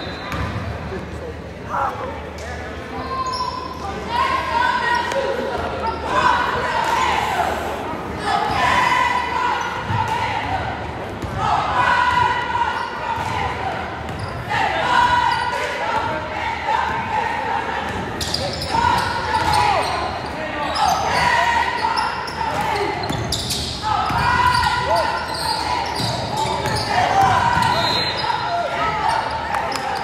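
Basketball being dribbled on a hardwood gym floor during play, with voices calling out every second or two in the echoing gym.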